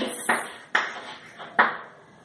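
Chalk on a blackboard: three sharp taps and short strokes as letters are written, about a quarter second, three quarters of a second and a second and a half in.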